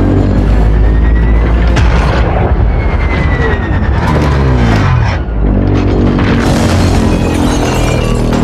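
Loud film soundtrack: orchestral score with heavy sustained low notes, mixed with the clanks and crashes of a giant robot's sound effects. Near the middle, a pitched sound slides steadily down over about a second and a half.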